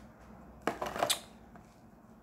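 Plastic wax-bar packaging being handled and set down: a few light clicks and rustles about a second in.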